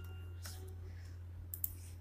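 Computer mouse clicks: one about half a second in and a quick pair near the end, over a low steady hum.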